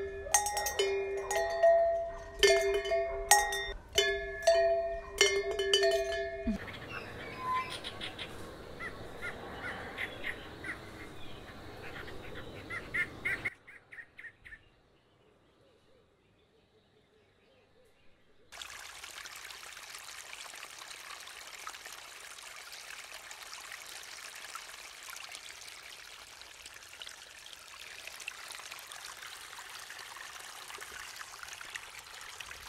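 A quick run of ringing, bell-like struck notes lasts about six seconds. Bird chirps follow over outdoor ambience, then a few seconds of near silence. From about halfway through, a steady rush of flowing water.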